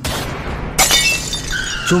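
Sound effect of a gunshot and a car's side window shattering: a sudden blast, then a louder crash of breaking glass with pieces tinkling a little under a second in. A thin high tone slides slowly down near the end.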